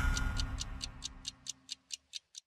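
TV programme theme music ending on a run of clock-like ticks, about four to five a second, that fade away as the music's low tail dies out.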